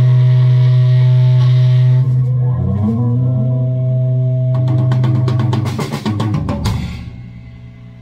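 Doom metal band ending a song: a heavily distorted electric guitar holds a low chord, then the drum kit plays a rapid fill of hits. The sound dies away near the end.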